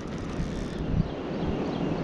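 Wind buffeting the microphone outdoors: a steady low rumble with no distinct events.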